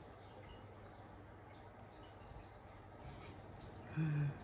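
Faint, scattered scratching of a wooden craft stick scraping away the moulding material to cut a hand cast free.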